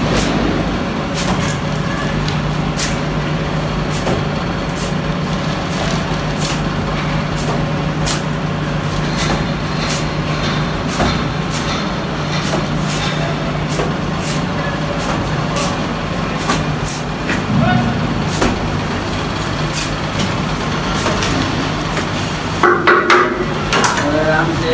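A steady low engine hum, with scattered sharp clicks and scrapes of a straightedge being worked over wet cement plaster on a wall.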